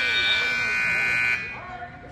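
Arena scoreboard buzzer sounding one long, steady tone that cuts off suddenly about a second and a half in.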